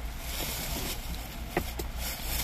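Steady hiss over a low hum, with two faint short clicks a little past halfway.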